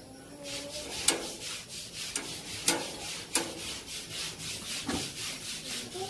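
Rhythmic rubbing or scraping strokes, several a second, with a few sharper knocks among them.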